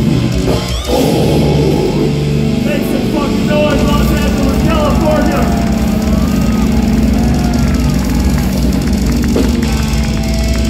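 Live death metal band's amplified guitars and bass ringing out in a loud, sustained low drone, with the crowd cheering, shouting and whistling over it.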